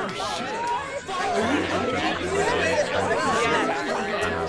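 A babble of several people's voices talking and laughing over one another, none clear enough to make out.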